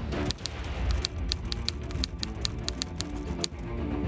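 Typewriter key-click sound effect, about five sharp clicks a second for some three seconds and stopping shortly before the end, over low background music.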